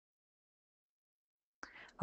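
Near silence, with a faint brief hiss near the end.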